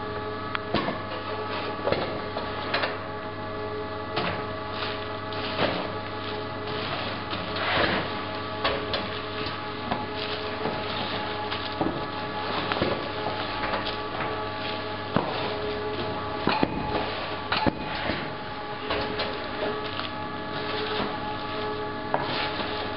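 Cardboard cases being packed by hand at a packing-station conveyor: irregular knocks, clicks and rustles of cardboard and goods being handled, over a steady machine hum.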